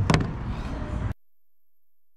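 Wind rumbling on the camera microphone, with one sharp knock just after the start, likely the camera being bumped. The sound cuts out abruptly about a second in, where the recording drops its audio.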